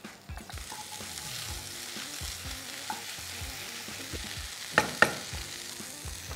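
Chopped carrots, mushrooms and broccoli sizzling in a hot oiled pan of curry masala as they are stirred, with a steady hiss. Two sharp knocks come just before five seconds in.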